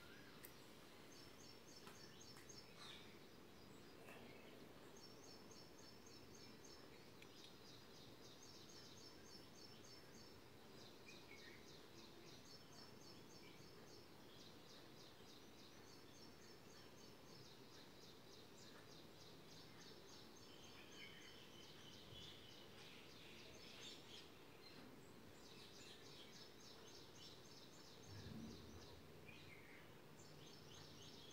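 Near silence: faint room tone with distant birds chirping in rapid, repeated trills.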